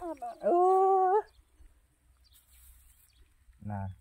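Speech: a drawn-out, high-pitched vocal note held for under a second, then a man says a short word near the end.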